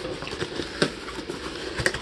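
Cardboard shipping box being opened by hand: flaps scraping and rustling, with two light knocks, one about a second in and one near the end.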